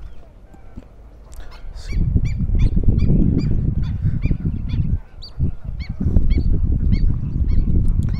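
Waterfowl honking over and over in short calls, about three a second, starting about a second in. A loud low rumbling noise runs under the calls from about two seconds in and drops out briefly about five seconds in.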